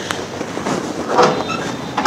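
Handling noise of a phone carried by someone walking: a steady rumble with a few scattered knocks and rustles.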